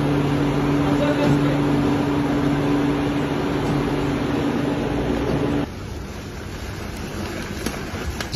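Factory machinery running with a steady low hum over a noisy hiss, which cuts off suddenly a little over halfway through and leaves a quieter background.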